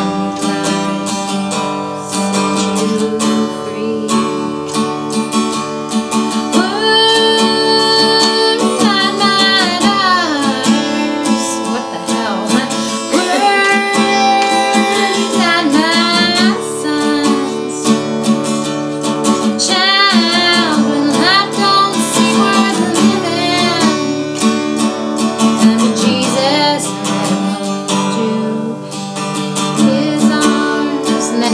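Acoustic guitar strummed as a steady accompaniment. A woman's voice sings a held, bending melody over it from about seven seconds in until near the end.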